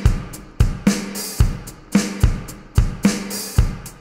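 A GarageBand digital drum kit track playing alone at full volume: a steady beat of kick-drum hits with cymbals over them. It sounds full and is not clipping.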